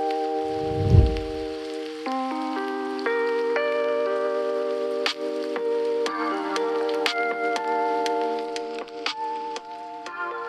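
A Samsung Galaxy A03s's single bottom-firing speaker playing a song at maximum volume: sustained chords that change every second or so, with sharp percussive clicks and little bass. A brief low boom comes about a second in.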